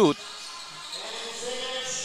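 A basketball being dribbled on a hardwood gym court, against the murmur of voices echoing in the hall.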